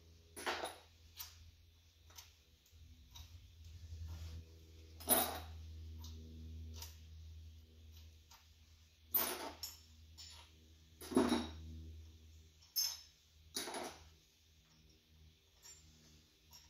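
Hand tools knocking and clanking on a partly stripped engine as its head bolts are worked loose: a handful of sharp metal knocks several seconds apart, over a low steady hum.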